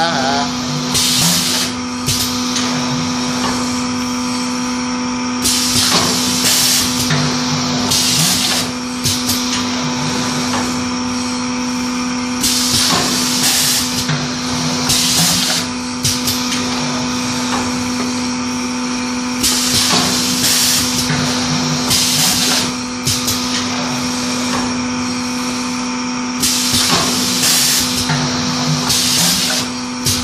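Pneumatic paper plum-cake mould forming machine working through its cycle: short hisses of compressed air from its cylinders come in groups about every seven seconds over a steady hum.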